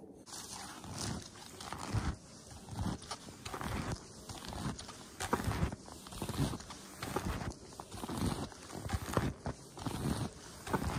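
Footsteps of Faber S-Line snowshoes crunching through deep snow at a steady walking pace, about three steps every two seconds.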